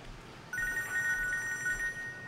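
Mobile phone ringing: a trilling electronic ring of two high notes sounding together, starting about half a second in.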